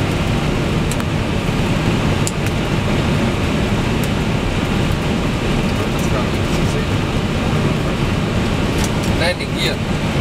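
Steady rush of airflow and engine noise in the flight deck of an MD-11F freighter on approach, with a few faint clicks.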